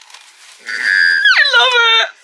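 A woman's high-pitched squeal of delight. It starts under a second in, holds high, then slides down in pitch near the end.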